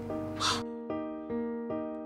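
Background score: soft keyboard notes struck in a slow, even pattern, roughly two or three a second. A brief breathy sound comes about half a second in.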